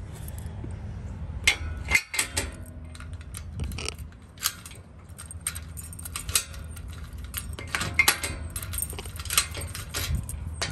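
Keys jangling on a key ring and a string of sharp metal clicks as a key works the newly fitted profile cylinder of a Locinox gate lock, throwing and drawing back the latch, over a steady low rumble.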